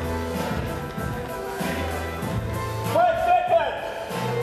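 Background music with a repeating bass line and a vocal line; a voice holds one note about three seconds in.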